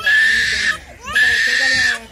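Infant screaming in distress while its head is shaved with a razor: two long, high wails with a gasping breath between.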